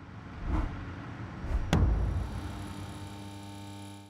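Logo sting sound effect: swelling whooshes with two deep low hits, the second with a sharp crack a little under two seconds in, then a held musical tone that slowly fades out.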